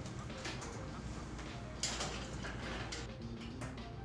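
A metal cupcake tin and the oven door clattering as the tin goes into the oven. There is one sharp clank about two seconds in and smaller clicks around it.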